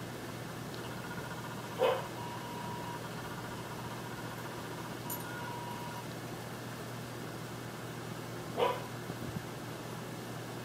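A dog barks twice, once about two seconds in and again near the end, with a faint steady whine in between and a low hum underneath.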